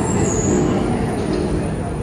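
Budapest Metro Line 1 (Millennium Underground) train running along the platform: a loud, steady rumble of wheels on the rails with a thin, steady high whine above it.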